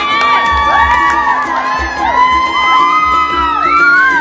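A group of girls screaming and cheering together in long, overlapping high-pitched shrieks, one climbing in pitch near the end, over dance music with a steady beat.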